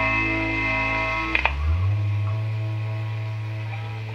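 Electric guitar and bass of a punk rock band holding a chord that rings on. About a second and a half in, a new chord is struck with a sharp attack and a lower bass note, then left ringing and slowly fading.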